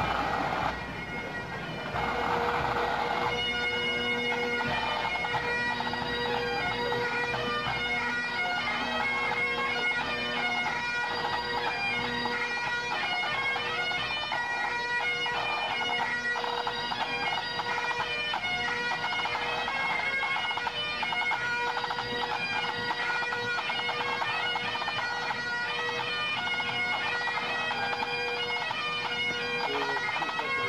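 A full pipe band playing: massed Highland bagpipes, the chanters' melody over a steady drone, with the band's side and bass drums. The sound dips briefly about a second in, then the band carries on at full strength.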